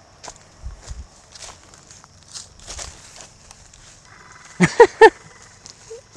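Faint footsteps and rustling on leafy forest ground, then a man's short laugh, three loud bursts, near the end.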